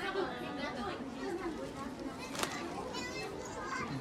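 Indistinct voices of several people talking in the background, children among them, with one short click a little past halfway.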